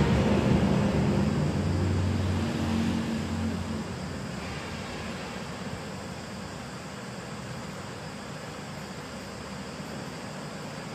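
A low engine hum, loudest over the first few seconds and fading out by about four seconds in, leaving a steady hiss.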